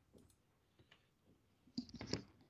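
A few faint computer mouse clicks over near silence, the loudest near the end.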